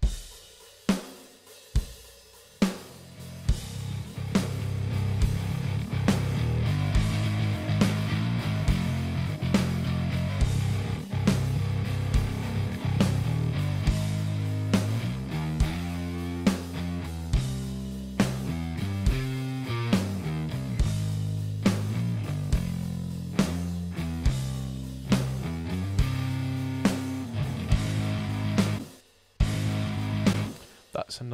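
Playback of a pop punk multitrack mix: a drum kit with kick, snare, hi-hat and cymbals plays a steady beat, and a distorted bass guitar fades in over the first few seconds beneath it.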